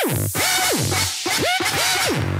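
Instrumental dubstep: a synth note repeated about four times, each one sweeping up in pitch, holding briefly, then sliding back down.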